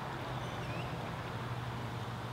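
Quiet outdoor background: a steady low hum under a faint even hiss, with a single faint short chirp a little under a second in.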